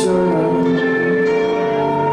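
Live rock band with electric guitars ringing out in long, sustained, chiming chords.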